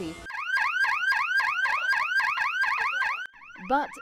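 Battery-powered electronic siren of a wheelbarrow ambulance, sounding a fast warbling sweep about four times a second, then cutting off suddenly about three seconds in.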